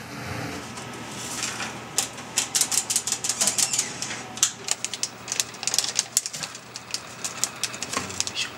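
Plastic seasoning sachet crinkling as it is torn and squeezed over a cup of instant noodles: a run of irregular sharp crackles starting about two seconds in.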